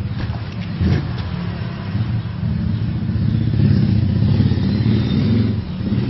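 A motor vehicle's engine running, a steady low hum that grows louder a little past the middle and eases near the end.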